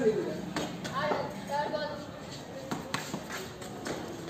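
Faint voices talking in the background, with a few light, sharp taps and clicks scattered through.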